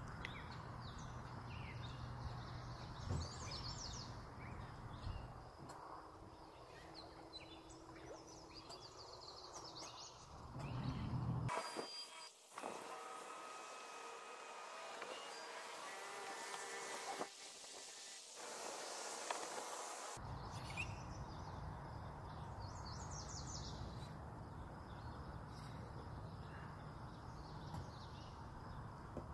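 Faint outdoor ambience: a steady low hum, with small birds chirping now and then. For a stretch in the middle the hum drops out and a thin hiss takes its place.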